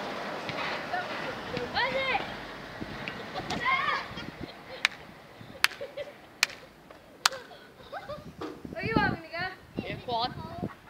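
Children calling and shouting, with four sharp knocks of a football being struck, evenly spaced a little under a second apart, in the middle.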